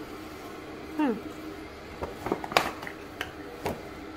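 A few sharp light knocks and clicks as small cardboard gift boxes are handled and set down on a countertop, over a faint steady hum.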